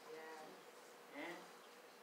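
Near silence: room tone, with a faint voice murmuring briefly just after the start and again about a second in.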